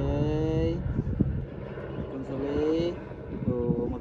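A steady engine hum that stops about a second and a half in, under a voice speaking in short, high, rising phrases.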